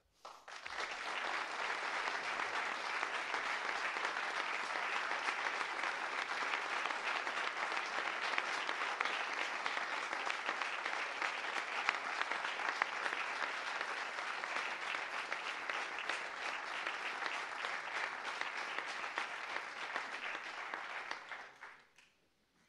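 Audience applauding, a dense steady clapping that starts within the first second and dies away near the end.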